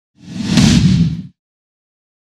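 Whoosh sound effect with a deep rumble under a hiss, swelling and fading once over about a second.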